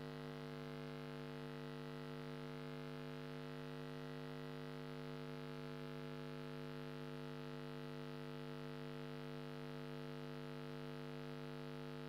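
Steady, low electrical mains hum on the chamber's open sound-system feed: an unchanging buzz made of several even tones, with nothing else heard.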